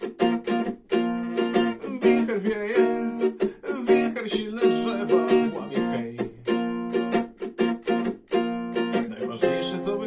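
Yamaha guitalele strummed in a steady rhythm of chords on its nylon strings, an instrumental passage with no singing.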